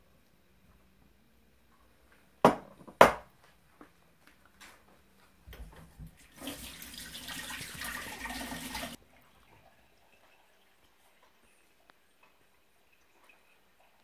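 Two sharp knocks half a second apart, then a kitchen tap running into the sink for about two and a half seconds before stopping suddenly.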